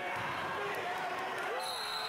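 Gym crowd noise at a basketball game: many voices and shouts, with a basketball bouncing on the hardwood floor. About one and a half seconds in, a referee's whistle sounds a steady high note.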